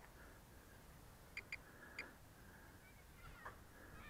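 Near silence outdoors, broken by three short, high bird chirps around the middle.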